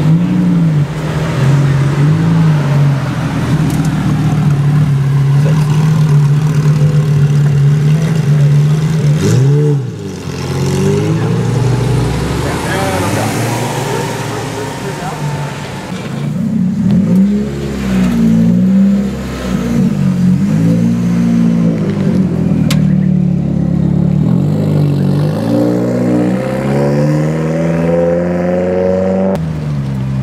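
Lamborghini Gallardo V10 engine revving and pulling away. It holds steady at first, then its pitch rises and falls several times.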